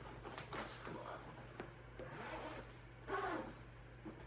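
Zipper on a black crocodile-embossed guitar case being pulled open around the case's edge in short, uneven rasps, with a louder stretch about three seconds in.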